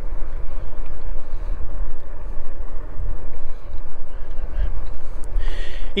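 Wind rumbling steadily on the microphone of a moving e-bike, with tyre noise from rolling over a rough lane.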